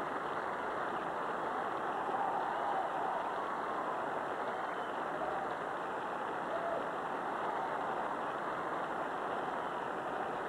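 A large theatre audience applauding steadily.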